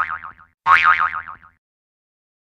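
Cartoon-style 'boing' sound effect, heard twice in quick succession: a springy tone that wobbles up and down in pitch and dies away within about a second each time.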